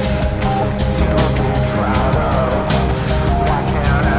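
Industrial metal music: a dense instrumental passage with a steady drumbeat and sustained, gliding synth or guitar tones, no singing.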